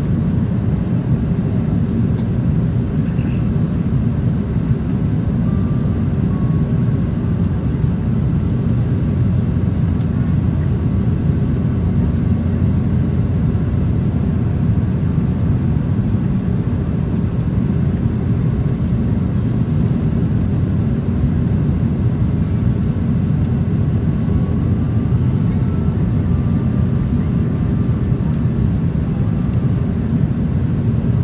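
Steady low cabin noise inside an Airbus A330 airliner on its descent, the hum of its Rolls-Royce Trent 700 engines and the rush of air past the fuselage heard from a passenger seat.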